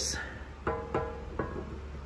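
A few light clicks and taps as an aluminium rear main seal cover is handled against an aluminium oil pan, one or two with a brief metallic ring, over a steady low hum.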